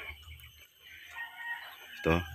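A rooster crows faintly, one drawn-out call in the second half.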